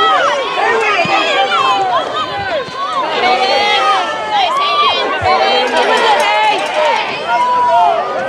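A crowd of spectators and players shouting and cheering at once, many voices overlapping continuously with no single voice standing out.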